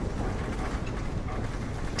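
A moving lift car rattling and rumbling steadily as it travels, a mechanical clatter from its workings.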